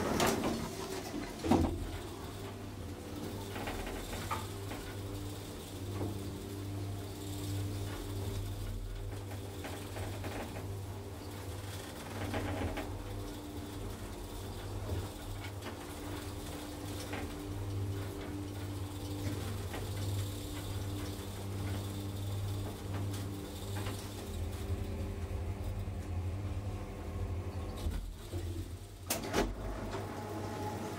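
1987 Valmet-OTIS hydraulic elevator in travel: a steady low hum throughout, with a sharp click about a second and a half in and a short clatter near the end.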